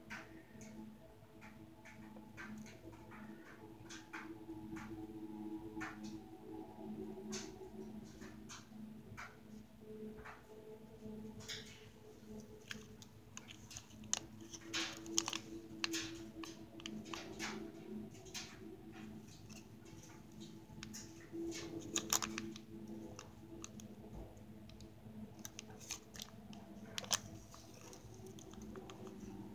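Faint, irregular small clicks and rustles of hand bead embroidery: Czech seed beads being picked up, and needle and thread being pulled through the felt backing, with a few sharper ticks along the way.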